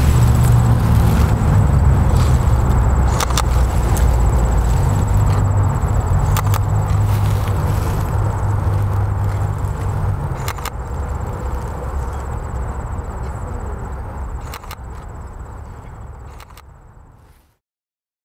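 Outdoor background noise with a steady low rumble and a few faint clicks. It fades out gradually over the last several seconds to silence.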